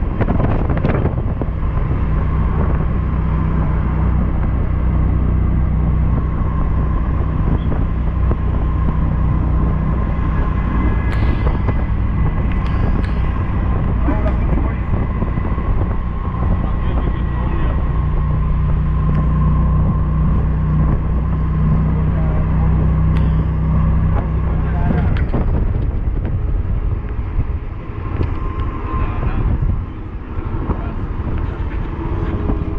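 Engine drone and road noise heard from inside a moving vehicle: a steady low hum that eases off in the last few seconds.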